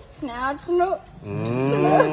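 A few quick spoken syllables, then a man's voice drawn out into one long, low, held call lasting about a second, running straight on into more talk.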